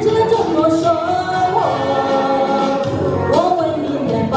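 A woman singing a Chinese pop ballad through a handheld microphone, holding long, sliding notes over instrumental accompaniment with a regular beat.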